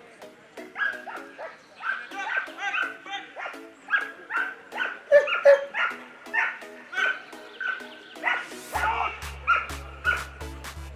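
German Shepherd barking repeatedly at a protection helper, about two barks a second, over background music whose low beat comes in near the end.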